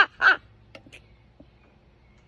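A woman laughing: the last two short 'ha' pulses of a laugh end within the first half second, followed by a few faint clicks.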